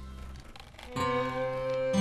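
Background music: one held chord fades away, and a new phrase of sustained notes begins about a second in.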